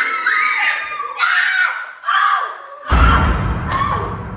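Children screaming and squealing in high, gliding cries of excitement. About three seconds in, a sudden loud, low rumbling noise starts and runs on.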